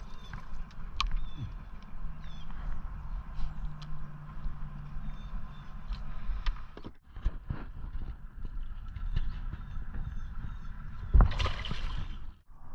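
Steady low rumble with scattered small clicks and knocks from fishing tackle being handled on the boat. About 11 seconds in comes a loud sudden splash at the water's surface, a hooked fish thrashing.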